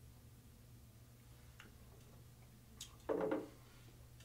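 Quiet room with a faint steady low hum. About three seconds in, a light click and then a short, louder knock as a glass of beer is set down on a tabletop after a sip.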